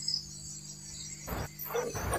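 Crickets chirping steadily in the background, a faint high trill.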